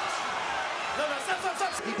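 Boxing arena crowd noise with commentators' voices, and a few sharp smacks of gloved punches landing in the second half.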